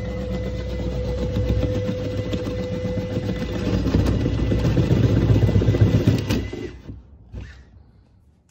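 Electric power saw cutting a vent opening through a wooden garage wall, a steady motor noise with a fast pulsing chatter that grows louder and then stops about seven seconds in.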